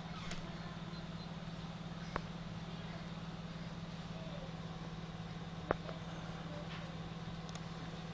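Steady low hum with a few sharp, isolated clicks, the loudest about two-thirds of the way through: plastic toy guns knocking as they are handled on a bed.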